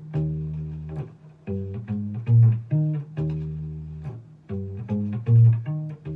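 Acoustic bass guitar plucking a repeating riff on the D string: a long held low note followed by a run of shorter notes, the phrase coming round about every three seconds.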